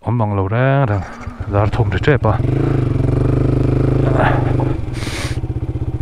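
A Yamaha sport motorcycle's engine running at low revs as the bike rolls off slowly, steady at first and then settling into an even throb. A short hiss comes about five seconds in.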